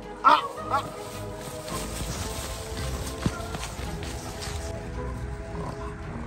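Background music with two loud, short honking calls whose pitch bends, the first about a quarter second in and the second just after. A single sharp click comes about three seconds in.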